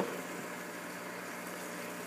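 Steady low hum of a reef aquarium sump with its pumps running, with the even wash of water flowing through the sump.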